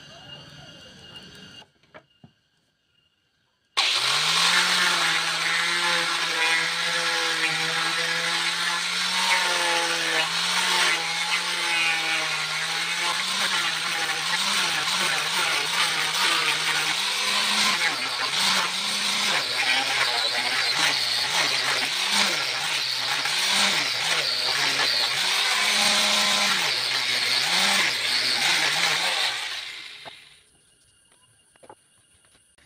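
Handheld electric sander with a round pad starting about four seconds in and running loudly while sanding wooden curtain-rod brackets. Its pitch is steady at first, then wavers up and down as it is pressed onto the wood, and it stops just before the end.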